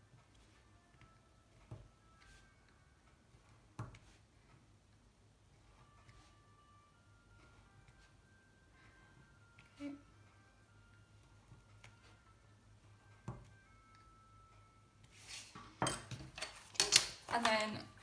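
Awl piercing holes through folded paper pages into a cardboard backing: a few faint, widely spaced sharp clicks. Near the end, loud rustling and crackling of the paper sheets being lifted and handled.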